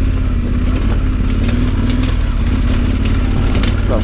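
KTM 1290 Super Adventure R's V-twin engine running steadily under light throttle as the bike rides over a rough gravel-and-mud track, with a heavy low rumble and scattered knocks from the rough ground.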